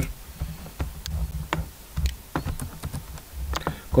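Computer keyboard keys clicking in an irregular run of separate keystrokes.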